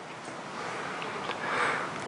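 A man drawing a long breath in close to a pulpit microphone, building gradually and peaking just before he speaks again, with a couple of faint clicks.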